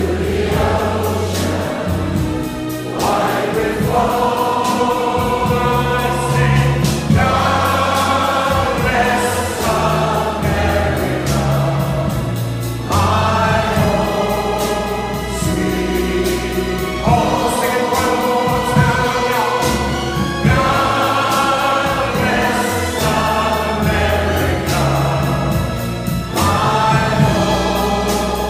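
Symphony orchestra playing a medley of American patriotic songs, with voices singing along, in long sustained phrases over a low bass line.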